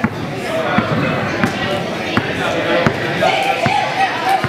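Basketballs bouncing on a gym floor, about six sharp thuds spaced under a second apart, amid the voices of children and adults.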